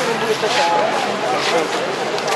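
Indistinct voices of people talking nearby, over a steady background noise.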